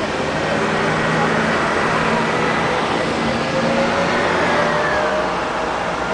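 City street traffic: the steady noise of motor vehicles running past, with an engine note that rises and falls slightly.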